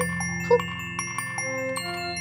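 Light background music of bell-like chiming notes, with a short spoken word about half a second in.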